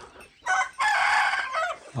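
A rooster crowing once, starting about half a second in with a short first note and a long held cock-a-doodle-doo that ends on a falling note.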